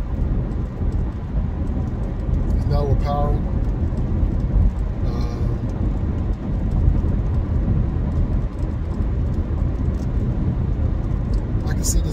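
Steady low rumble of road and engine noise inside the cabin of a car moving at highway speed. A brief bit of voice comes about three seconds in.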